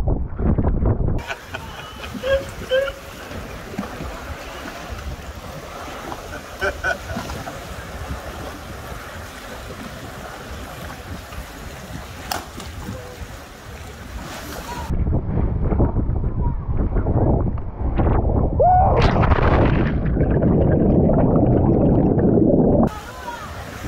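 Sea ambience: water lapping and washing around the boat, with wind on the microphone that grows into a heavy rumble in the last third. A single short voice call rises out of it near the end.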